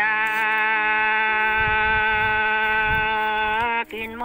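A voice in a Dao folk love song holds one long sung note at a steady pitch, breaking off just before four seconds.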